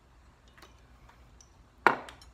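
A few faint ticks, then one sharp knock of glass on a hard counter near the end, with a few smaller clicks after it: glassware being set down.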